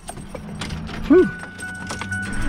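Steady low hum of a vehicle heard inside its cab, with a short hummed vocal sound about a second in and a faint high steady tone starting just after it.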